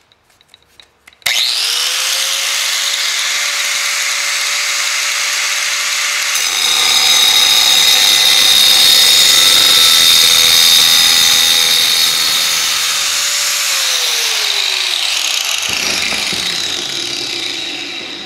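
Makita 4-inch angle grinder with a diamond blade: switched on about a second in and running up to speed, then cutting a ceramic floor tile from about 6 to 13 seconds, a louder grind with a high whine. It is switched off near the end and winds down with a falling pitch.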